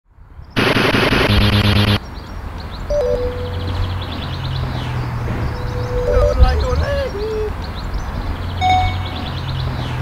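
Retro video-game style intro music: a loud, harsh sound-effect burst for about a second and a half near the start, then a low steady synth drone with a few sliding higher notes over it.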